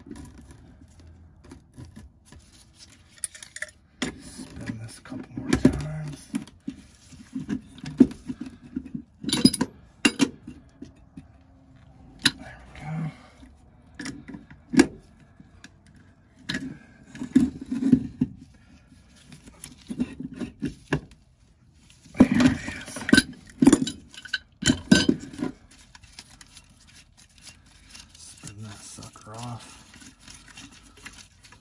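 Irregular metallic clinks, knocks and clatter of a gas valve, black iron gas pipe and a pipe wrench being handled and set down on a plywood floor, with a burst of louder clatter about three quarters of the way through.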